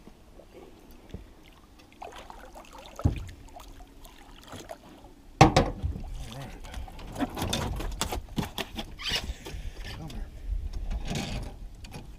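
A hooked catfish being brought in beside a boat and lifted out of the water over the gunwale: a sudden loud splash and knock about five seconds in, then irregular knocks, dripping and rustling as it comes aboard.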